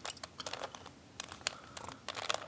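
3x3 Rubik's cube being turned by hand, a string of quick, irregular plastic clicks as its layers turn.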